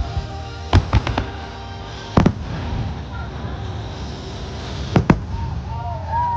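Aerial firework shells bursting with sharp bangs over the show's music: a quick run of four bangs about a second in, another about a second later, and two close together near the end.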